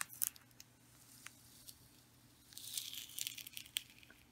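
Clear transfer tape being peeled up off an adhesive vinyl stencil letter on a painted board: a few faint ticks, then a soft hissing peel lasting about a second, a little past halfway.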